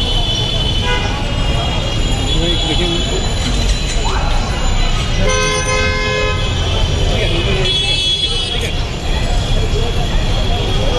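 Busy street noise with people talking and traffic. A vehicle horn honks once, for about a second, near the middle.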